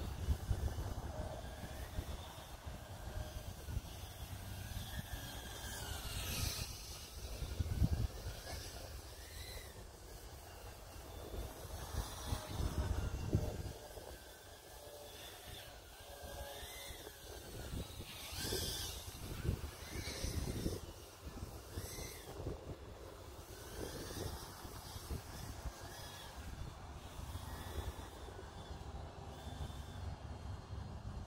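Outdoor ambience with wind gusting on the phone microphone, a low uneven rumble that swells and fades, and faint short chirps rising and falling every few seconds.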